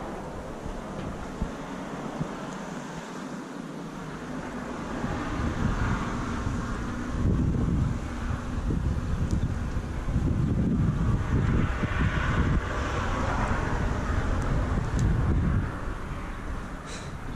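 Wind buffeting the microphone in heavy gusts from about five seconds in, over the sound of cars passing on a road, which swells twice.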